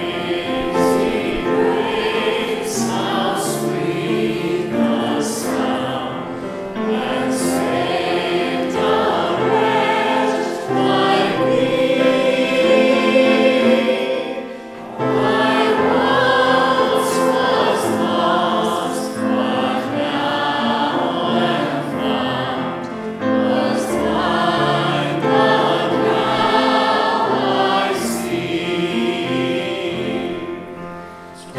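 A man and a woman singing a song together with grand piano accompaniment, with a brief break about halfway through.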